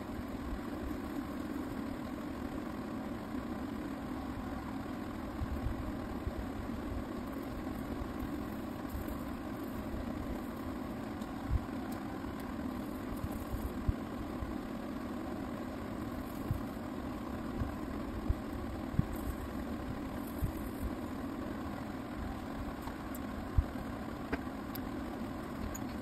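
A steady low mechanical hum with a handful of faint clicks scattered through it.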